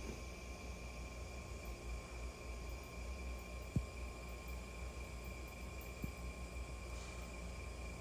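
Low, steady background hum with a faint constant high-pitched tone over it, and two small faint clicks about four and six seconds in.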